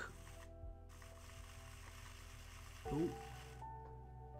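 Hornby OO-gauge Castle Class model locomotive's small electric motor running on a rolling road, a faint steady hum with a light hiss. The wheels are fouled with paint and it runs stiffly and temperamentally.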